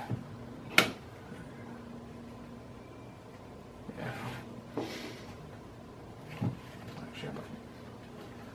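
Hard objects handled on a wooden workbench: a sharp click a little under a second in, then a duller knock later and a few faint ticks, as a fiberglass mold box is moved and set down.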